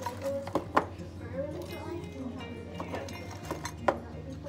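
Sharp clicks and knocks of a small metal scoop against a plastic tub and of crunchy toffee pieces dropping onto an iced drink, several in all, the loudest about three-quarters of a second in and just before the end.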